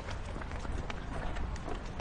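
Quick footsteps of several people hurrying on pavement, irregular and overlapping, over a low steady rumble.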